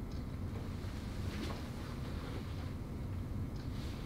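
Steady low background rumble, with a brief soft hiss about a second and a half in and another near the end.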